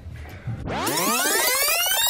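Synthesized sound effect: a loud stack of tones sweeping upward in pitch together, starting about half a second in.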